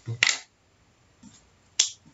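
Ballpoint pen marking an X on paper: two short, sharp clicks about a second and a half apart.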